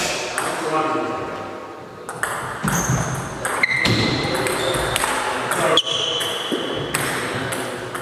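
Table tennis rally: the ball clicks off the bats and the table in quick succession, with a few short high-pitched squeaks in the middle of the rally.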